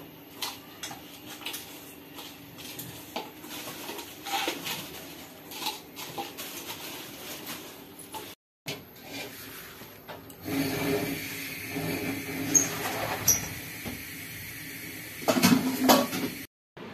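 Hands mixing small fish with spices and oil in a stainless steel bowl: soft wet squelches and light clicks of fingers and fish against the metal. After a short break, a louder, steadier noise sets in, and a cluster of knocks comes near the end.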